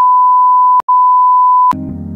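Steady, single-pitched electronic beep that replaces the music, breaks off once for an instant a little under halfway, and stops near the end, where hip-hop music comes back in quietly.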